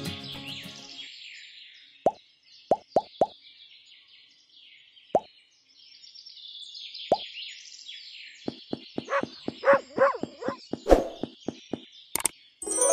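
Water drops plopping into water: a few scattered drops, then a quick run of drops near the end, over faint birdsong.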